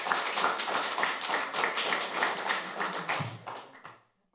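Audience applauding, many hands clapping at once; the applause fades out just before the end.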